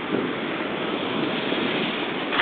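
Steady rushing outdoor noise: wind on the microphone mixed with street traffic.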